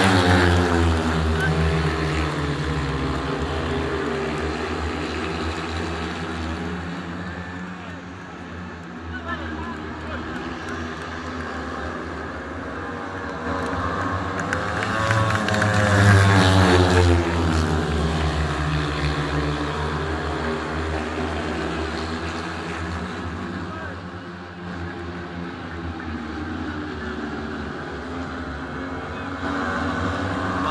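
Four 500 cc single-cylinder speedway bikes racing round the track. Their engines swell loud and drop in pitch as the pack passes close, just at the start and again about sixteen seconds in, then fade as the riders go round the far side.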